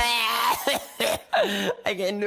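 The backing music cuts off, leaving a man's unaccompanied voice coughing and clearing his throat without words.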